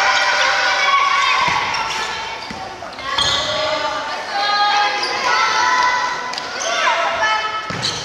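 Children's voices shouting and calling out over one another in a large gym hall during a dodgeball game. Several thuds of the ball striking the floor or a player are heard among them.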